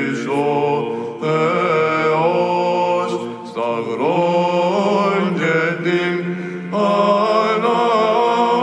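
Byzantine chant in the plagal fourth mode, sung by male monastic chanters. The melody moves in phrases over a steady low held drone (the ison), with brief breaths between phrases.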